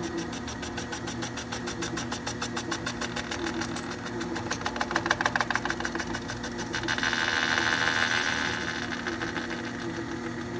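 Tire-truing lathe spinning a quarter midget racing tire, its motor humming steadily while the cutter bit shaves the rubber with a rapid, even ticking. The cutting grows louder about halfway through and louder and harsher still for a second or two near the end. On this first pass the bit takes very little off and cuts only the high spots of a slightly wobbling tire.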